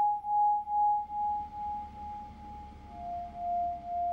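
Background music: one sustained pure tone, like a singing bowl, that swells and fades about twice a second and drops to a slightly lower note about three seconds in.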